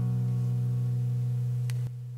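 Final chord of an acoustic guitar ringing out and slowly fading; just before the end most of the ring drops away sharply, leaving a faint low tone.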